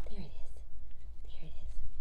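A person's soft, whispered voice in two short bits, about a quarter second and a second and a half in, over a steady low rumble.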